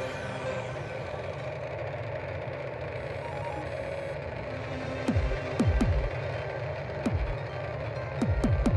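Sci-fi spacecraft sound effect: a steady rushing engine-like noise, joined from about five seconds in by several quick falling-pitch swoops, the loudest part.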